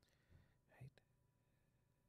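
Near silence in a pause in the talk, with faint breath and mouth sounds close to the microphone about a second in, ending in a small click.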